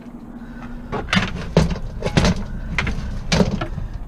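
Aluminum-framed chairs knocking and clattering as they are loaded into a minivan's cargo area onto its metal plate floor: a run of about six sharp knocks between about one and three and a half seconds in.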